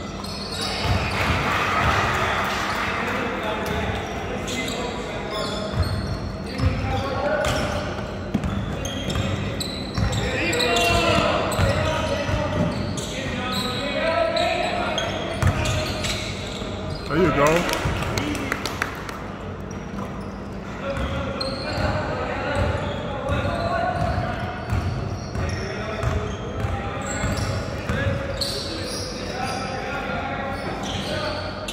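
Basketball game on a hardwood court: the ball bouncing and players moving, with indistinct shouts and voices from players and onlookers, echoing in a large gym.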